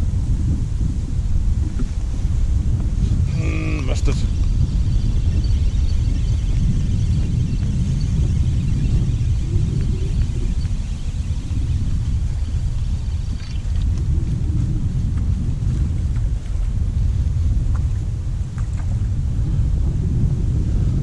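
Strong wind buffeting the microphone, a steady low rumble throughout. A short pitched call cuts through it about three and a half seconds in.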